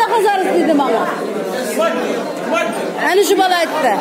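Several people talking at once in a large, echoing hall: indistinct chatter.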